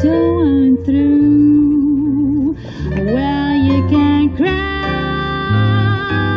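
Live jazz trio: a woman sings a slow ballad with held, wavering notes, over a plucked upright double bass and piano.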